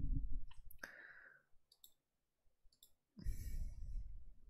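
Several light, sharp clicks spread over the first three seconds, then a short, louder bump of handling noise a little after three seconds in.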